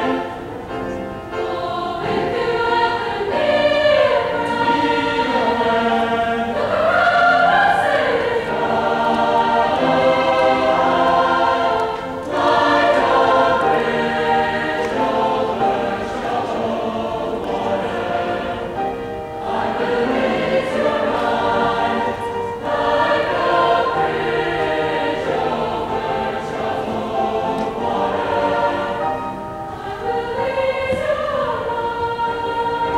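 Mixed high school choir of girls' and boys' voices singing, sustained phrases with short pauses about twelve seconds in and again about twenty-two seconds in.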